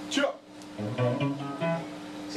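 A brief loud burst at the start, then a short run of plucked guitar notes, about five a second, stepping in pitch over a steady low hum.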